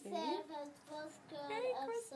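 A young child's voice singing, high-pitched notes that glide and are held briefly.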